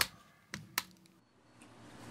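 Two short, faint clicks a little under a second in, over quiet studio room tone.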